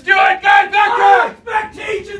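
A group of hockey players shouting together in a team cheer: a quick run of loud yells from many voices at once.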